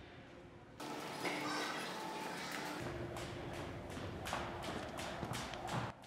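Jump rope and feet tapping on a wooden gym floor in quick, uneven taps, starting about a second in after a near-silent moment.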